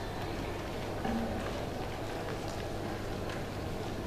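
Steady hall room noise with a low hum, broken by scattered light taps and clicks.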